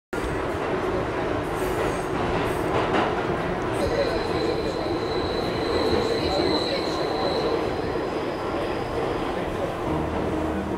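Subway train running past on its rails: a steady dense rumble with a thin high wheel squeal from about four seconds in until about seven and a half seconds, and a few sharp clicks in the first three seconds.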